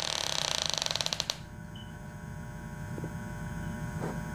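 Wooden chair and restraint straps creaking as someone strains against them: a quick run of creaks that lasts just over a second and stops abruptly, leaving only a faint hum.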